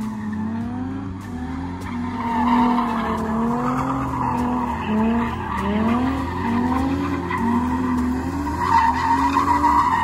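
Nissan 350Z's tires squealing as it drifts in circles on asphalt, over an engine revving up and down in repeated swells about once a second.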